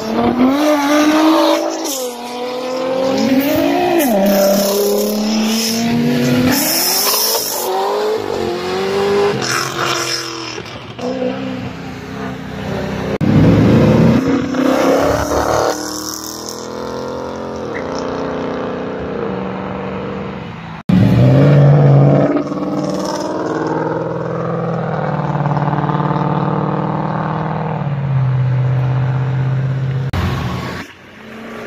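Sports cars accelerating hard away one after another, engines revving up through the gears so that the pitch climbs and drops at each shift; one of them is a Ford Mustang. After an abrupt break, another car's engine runs with a steadier, lower note.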